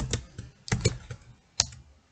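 Computer keyboard being typed on: a few separate keystrokes, the last and sharpest about one and a half seconds in.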